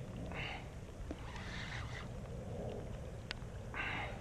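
Steady low wind rumble on the microphone over open water, with a few short, soft hissing sounds and one small tick.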